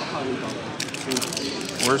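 Foil wrapper of a Panini Mosaic trading-card pack crinkling in the hands as it is opened, a run of quick crackles starting about a second in.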